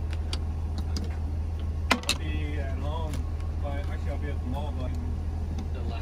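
Steady low rumble of an idling engine, with a few sharp clicks about two seconds in and muffled voices talking in the background.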